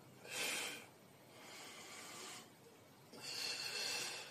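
A man breathing hard through a set of dumbbell biceps curls, blowing out on the lift and breathing in on the way down. There are three heavy breaths: a short loud one, a longer, softer one, then a long loud one near the end.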